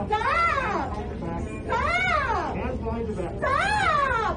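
A woman wailing: three drawn-out, wordless cries about a second and a half apart, each rising and then falling in pitch.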